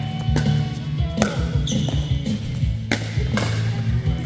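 Pickleball rally: several sharp pops of paddles striking the plastic ball and the ball bouncing on the court, with music playing underneath.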